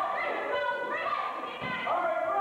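Raised voices calling out encouragement at a sparring bout, overlapping and unclear.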